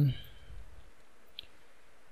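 A single short click at the computer, about a second and a half in, over quiet room tone, as a selected block of code is being copied. The tail of a spoken word trails off at the very start.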